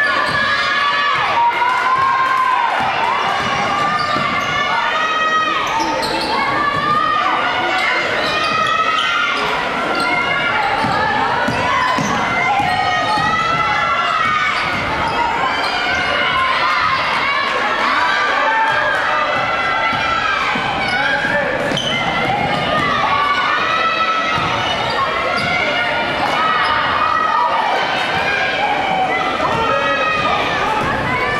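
Gymnasium sound of a basketball game in play: a ball being dribbled on the hardwood floor amid many overlapping voices of players and spectators calling out, echoing in the large hall.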